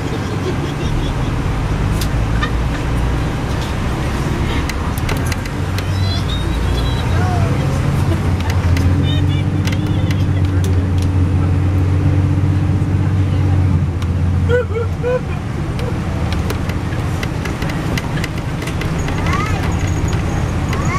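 Cabin sound of a 2002 MCI D4000 diesel coach on the move: a steady low engine and road drone, which grows deeper and stronger for several seconds in the middle and eases off again about fourteen seconds in.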